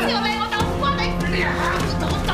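A woman's wordless screams and cries as she struggles, over background music with sustained low notes that shift to a lower pitch about half a second in.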